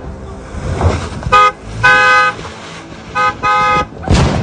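Car horn honked four times in two pairs, a short toot followed each time by a longer one, each blast a loud steady tone.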